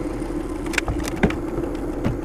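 A boat's outboard motor idling steadily, with a few short knocks about a second in from the ice chest being handled.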